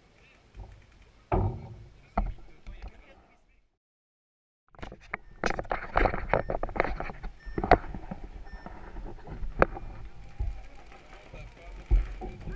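Sharp pops of paintball markers firing in irregular bursts across the field, loudest in the second half, mixed with shouting voices. The sound drops out entirely for about a second near the middle.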